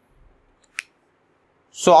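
A pause in near silence, broken by one short, sharp click a little under a second in; a man's voice starts speaking near the end.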